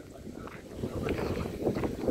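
Wind buffeting the microphone with a low rumble, with faint voices in the background.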